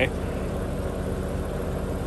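Steady low hum of an idling engine, even and unchanging.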